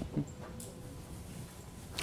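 Quiet lecture-hall room tone with a faint steady hum, and one brief soft sound just after the start.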